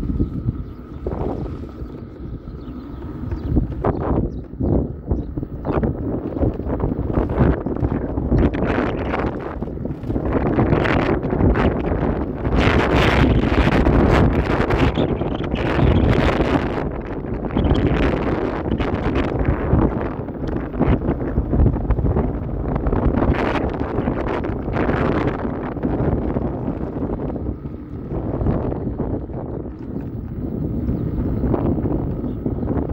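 Wind rushing over the microphone and tyre rumble from an electric scooter ridden at up to about 50 km/h. The noise is loudest in the middle, as the speed peaks, and eases near the end as the scooter slows.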